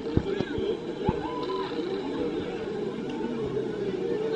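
Many people's voices chattering and calling out at once, with a faint steady low hum underneath.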